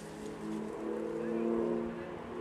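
Engine of an approaching rally car, a steady pitched note that steps up slightly about halfway through.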